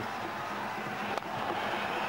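Steady crowd noise from a cricket stadium, with one sharp crack of a cricket bat striking the ball about a second in.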